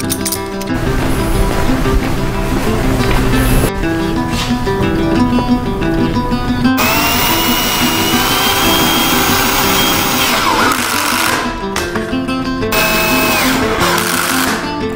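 Background music with a cordless drill running over it. The drill gives a whine that rises and then holds for about three seconds, about seven seconds in, and a second, shorter run near the end.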